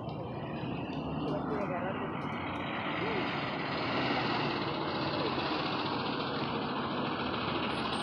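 A school bus engine approaching and pulling up, growing louder over the first four seconds and then running steadily. Children's voices are faint underneath.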